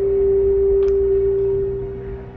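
A single steady mid-pitched tone held without a wobble, dying away a little near the end.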